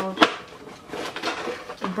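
A sharp, loud click about a quarter second in, followed by quieter tapping and rustling: hard objects being handled close to the microphone.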